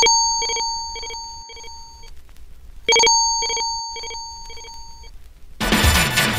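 Telephone ringing twice, each ring lasting about two seconds with a pulsing beat of about two strokes a second and fading away. Loud music comes in near the end.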